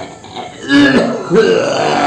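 A man belching and groaning loudly in drawn-out heaves, the first starting a little under a second in and the second about half a second later.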